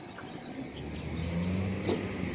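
A car approaching along the street, its low steady engine hum growing louder from about half a second in.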